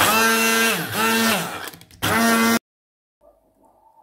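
Hand-held stick blender motor whining as it purées chunks of tomato. Its pitch dips and recovers about a second in as the blade bogs down in the tomato. It runs in two bursts, a long one and a short one, then cuts off.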